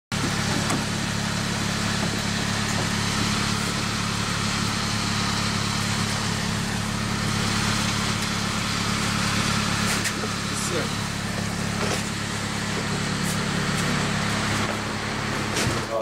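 Van engine idling steadily, a constant low hum with a hiss over it, and a few faint knocks.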